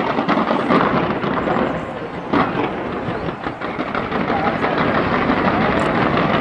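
Fireworks bursting in quick succession, a dense run of bangs and crackles with a sharper bang at the start and another about two seconds in, under the voices of a crowd of onlookers.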